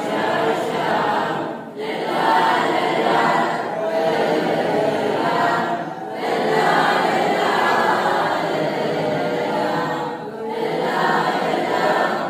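A group of students singing a prayer together in unison, unaccompanied, line by line, with a short pause for breath about every four seconds.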